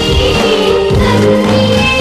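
A song playing: singing over instrumental accompaniment with a steady bass pulse.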